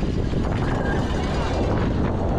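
Downhill mountain bike at race speed heard from a helmet camera: loud, steady wind rush over the microphone mixed with tyres and frame rattling over rough dirt. Trackside spectators shout over it.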